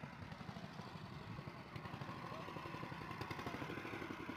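Faint outdoor background noise: a low, uneven rumble with a faint steady tone above it and no voices.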